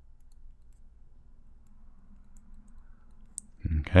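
Faint, sparse ticks of a stylus on a pen tablet while writing, over a low steady hum.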